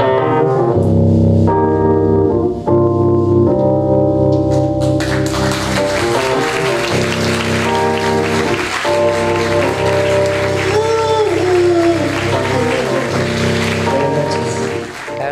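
Live rock band music: sustained chords at first, then about five seconds in a fuller, denser band sound takes over.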